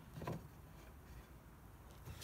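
Quiet handling of a small metal toggle latch on a folding windscreen, with one faint, soft knock just after the start over a low background hum.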